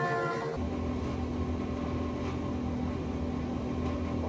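A steady low hum with a faint constant tone, unbroken, after the last words of a woman's speech in the first half second.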